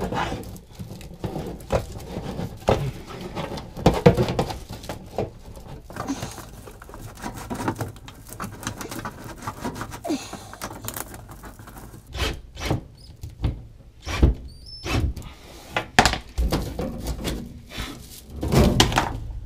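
Flexible aluminium foil dryer duct crinkling and rustling as it is pushed and twisted by hand onto a metal vent collar, with irregular knocks and thunks against the sheet-metal vent box.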